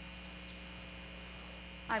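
Steady electrical mains hum in the room's sound or recording system, with a voice starting to speak right at the end.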